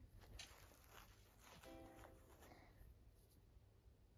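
Near silence: room tone with faint rustles and a brief, faint pitched sound near the middle.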